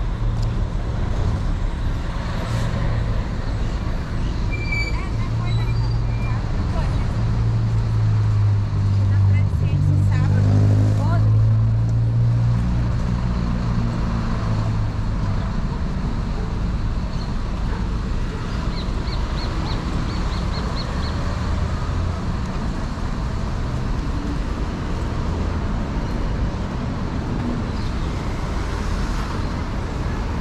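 Street traffic: a steady low rumble of road vehicles, with one vehicle's engine passing close and loudest about ten seconds in before fading.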